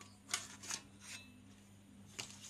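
Two short scrapes of a painted sheet-metal case cover being slid off a soldering station's chassis, followed by a few fainter handling sounds.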